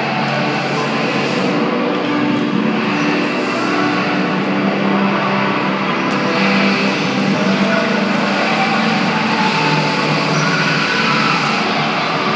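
Music playing along with the steady rolling of roller-skate wheels on the hall floor.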